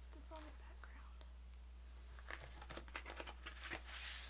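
Faint rustling of paper and light clicks as hands handle a ring planner's pages and inserts, the clicks bunched in the second half. A brief faint murmur of voice near the start.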